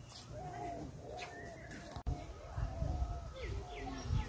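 Birds calling and chirping outdoors: repeated short calls with thin, high, falling chirps. The sound drops out for an instant about halfway, then a low rumble on the microphone joins in.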